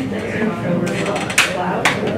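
Indistinct voices, with two sharp clicks about half a second apart a little past the middle.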